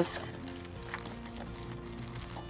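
Water pouring steadily from a watering can's sprinkler rose onto potting soil in a plastic jug, under soft background music with held notes.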